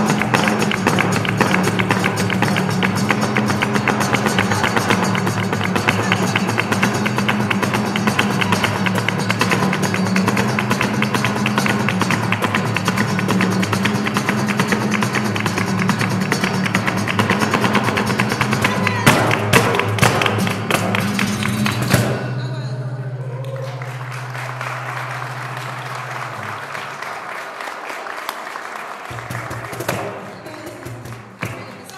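Live flamenco played by a street group: Spanish guitar, cajón, palmas hand-clapping and a dancer's heel footwork on a wooden board, all in a dense, fast rhythm. It ends abruptly about two-thirds of the way through with a few sharp stamps, leaving a steady low hum and quieter background noise.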